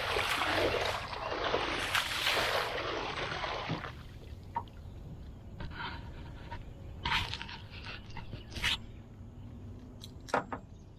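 A hooked catfish thrashing and splashing at the water's surface beside the boat for about the first four seconds. Then the splashing stops and a few short knocks follow.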